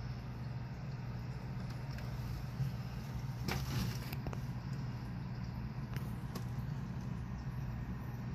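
Steady low electrical hum from running aquarium equipment, with a brief rustle about three and a half seconds in and a couple of faint clicks.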